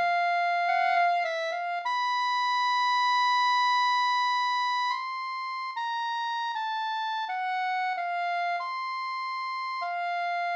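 Synthesized clarinet, rendered by a computer music program, playing a solo line with no accompaniment: a few quick notes, one long held note, then a string of evenly paced notes.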